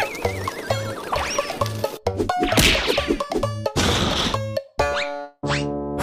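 Cartoon soundtrack: bouncy background music with comic sound effects. A wobbling tone comes early, a run of knocks and crashes starts about two seconds in, and a pitch glide follows near the end as a character is slammed into a wall.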